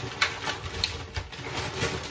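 Rustling and crinkling of a shopping bag and a plastic fruit punnet being handled in gloved hands, with irregular clicks and a sharp snap about a quarter second in.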